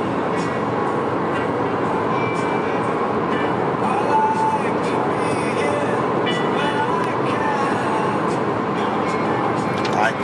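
Steady road and engine noise inside a moving car's cabin, with faint higher sounds over it.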